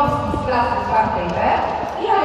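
A person's voice speaking into a microphone, amplified over loudspeakers in a large sports hall.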